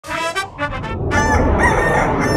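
A rooster crowing: a few short calls, then a long crow starting about a second in.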